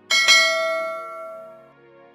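A notification-bell chime sound effect rings once just after the start, a bright ring with many overtones that dies away over about a second and a half, over faint background music.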